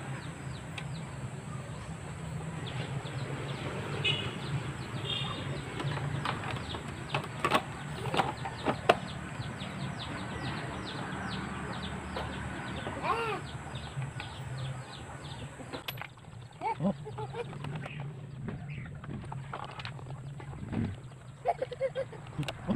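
Yard ambience of birds chirping rapidly and chickens clucking, with a few sharp clicks of plastic motorcycle fairing parts being handled near the middle.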